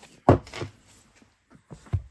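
Paperback books handled and put down on a wooden table: a soft thump shortly after the start and another near the end, with lighter knocks and rustling between.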